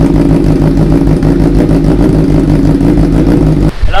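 2016 Honda CBR1000RR SP's inline-four engine idling steadily through an SC Project full-system titanium exhaust, heard close at the muffler. It cuts off suddenly just before the end.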